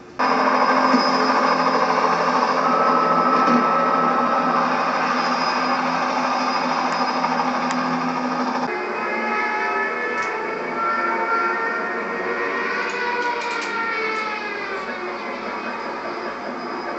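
Film soundtrack playing from a television: a helicopter scene, loud and sudden from the start, with engine noise and music. About nine seconds in it changes to many held tones that slide downward near the end, then slowly fades.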